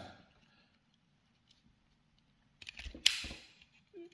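A few small clicks, then a sharp snap about three seconds in: a hand wire stripper closing on a thin wire of a USB charging cable and pulling off its insulation.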